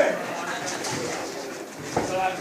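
Indistinct spectators' voices and murmur in a hall, quieter and less distinct than the talk around it.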